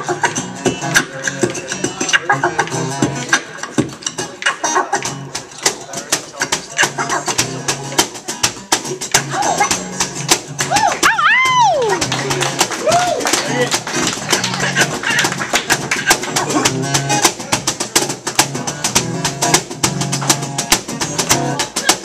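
Acoustic guitar strumming an instrumental passage, driven by a fast, dense beat of beatboxed and cajon percussion. About halfway through, a sliding vocal swoop glides up and back down in pitch.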